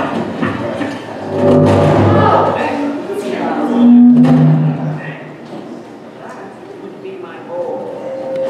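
Animated film soundtrack played over loudspeakers in a large, echoing room: two loud stretches of character voices, about one and a half and four seconds in.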